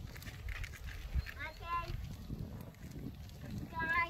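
Two short, high-pitched wordless vocal calls, one about midway and one right at the end, over a steady low rumble.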